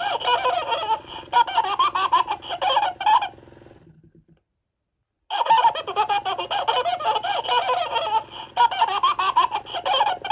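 Electronic 'World's Happiest Grad' Tickle Tickle Wiggle Wiggle plush laughing hysterically, a recorded cackling laugh over a steady low hum from the toy's wiggle motor. The laughing stops a little after three seconds, the hum fades out, and after about a second of silence a second bout of laughing starts just past five seconds.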